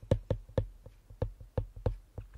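Stylus tip tapping and clicking on a tablet's glass screen while handwriting words: an uneven run of light, short taps, about five a second.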